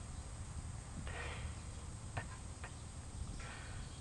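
A cat licking water from the sports-cap spout of a plastic water bottle: a few sharp clicks from tongue and spout in the middle, with two short hissing bursts, one about a second in and one near the end.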